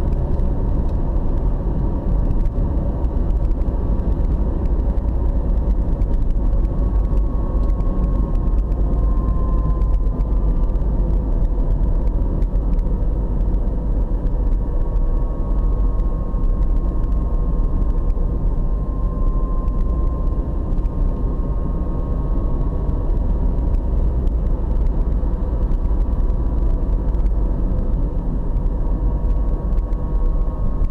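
Steady low rumble of a car driving along a paved road, heard from inside the cabin: engine and road noise, with a faint whine that wavers slightly in pitch.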